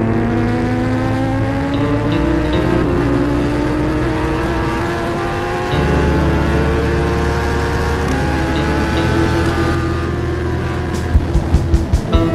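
Kawasaki Ninja ZX-10R superbike's inline-four engine pulling hard at very high speed, its pitch climbing steadily through the first half, with music playing over it and a steady heavy bass coming in about halfway.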